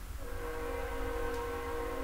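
A train horn sounding one long, steady blast, beginning a fraction of a second in, from a train passing by.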